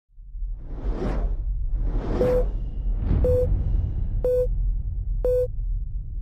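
Title-sequence sound effects: three whooshes about a second apart over a steady low rumble. From about two seconds in come short beeps, one a second and four in all, each starting with a click.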